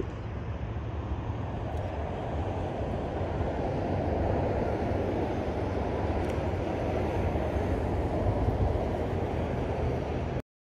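Wind blowing on the microphone: a steady low rumble with a rough rushing hiss above it, swelling a little partway through.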